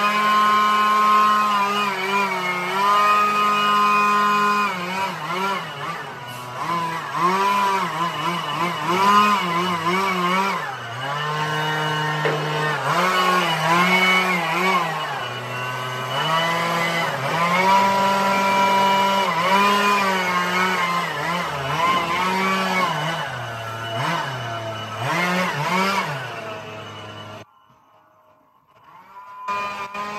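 Backpack leaf blower engine running under throttle, its pitch rising and falling over and over as it is revved up and eased back while blowing debris. It cuts off suddenly a little before the end.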